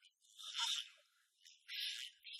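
A man's voice speaking in two short runs, sounding thin and hissy, with almost none of its low tones.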